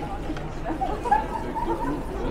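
Indistinct chatter of several passers-by talking at once over the low hum of a busy street.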